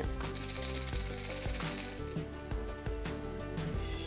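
Hard plastic minnow wobbler (Berkley Cutter) shaken by hand, the metal balls in its rattle chamber clattering rapidly for about two seconds, over background music.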